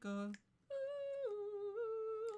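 A person humming along to a catchy pop tune. After a brief sung syllable comes one long, held, high note that steps down in pitch partway through and lifts slightly again.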